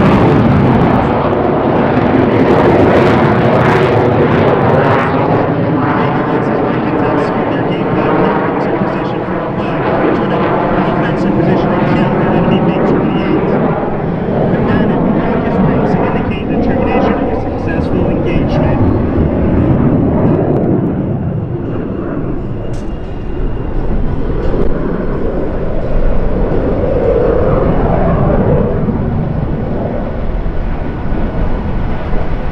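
Continuous noise from F-5N Tiger II fighter jets, whose twin turbojets rise and fall as the jets fly overhead, with a louder swell near the end. Voices are heard over it.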